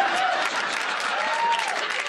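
Sitcom studio audience applauding, with a few voices calling out over the clapping.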